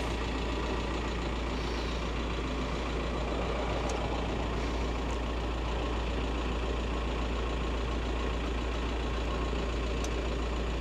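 VW T5 Transporter's engine idling steadily, heard from inside the cab.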